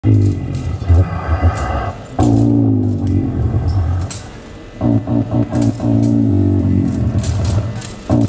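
Hip-hop street music: beatboxing into a handheld microphone over a deep synth bass line from a small keyboard, played through an amplifier. The sharp hi-hat-like clicks and the bass run on together, thin out briefly about four seconds in, then come back.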